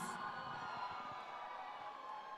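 The amplified announcing voice's echo dies away in a large tent hall, leaving faint steady hall noise from the crowd and PA.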